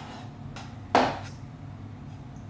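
A kitchen knife chopping a pickle on a wooden cutting board: a sharp knock about a second in.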